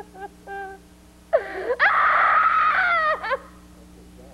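A woman's high, breathy vocal cry: a brief call, then a rising squeal that is held for about two seconds, slowly falling in pitch, and breaks off near the three-and-a-half-second mark.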